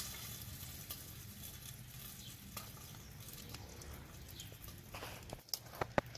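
Popcorn kernels sizzling in a pan held over a wood campfire, a steady faint hiss with scattered crackles. Near the end come a few sharper ticks as the first kernels begin to pop.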